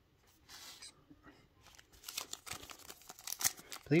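Foil wrapper of a Panini Prizm retail trading-card pack crinkling and tearing open by hand, a quick run of crackles from about halfway through. A brief soft rustle comes before it.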